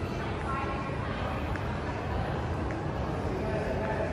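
Steady low rumble of indoor public-space ambience picked up by a handheld camera while walking, with faint, indistinct voices now and then.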